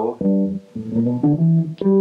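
Electric guitar playing a short run of about four single notes in the low register, the last note left ringing. The run shows a lead line played low.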